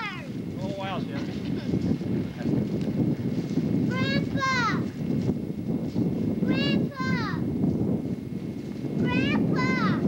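Wind buffeting the camcorder microphone in a steady low rumble, with a high-pitched voice calling out three times, each drawn-out call rising and then falling in pitch.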